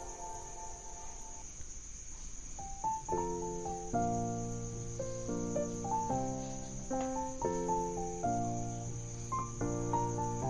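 Background music of held chords that change every second or so, sparse at first and fuller from about three seconds in, over a steady high-pitched hiss.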